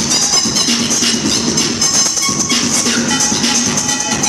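Techno DJ set played loud over a festival sound system: a short low synth note repeating every half second or so over dense, clattering high percussion.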